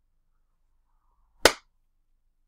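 A single sharp clap about one and a half seconds in.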